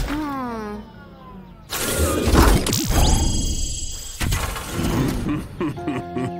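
Cartoon sound effects: a falling, voice-like cry, then a sudden crash with shattering about two seconds in, followed by high electronic tones with a rising sweep.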